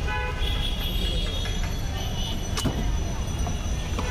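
Busy street background: a steady traffic rumble with short vehicle horn toots, and a single sharp click about two and a half seconds in.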